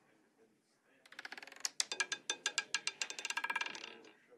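Roulette ball clattering across the spinning wheel's pocket separators. A quick, irregular run of ticks starts about a second in and stops just before the end as the ball settles in a pocket.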